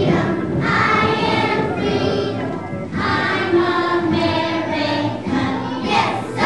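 A group of young children singing a song together in unison, holding long notes.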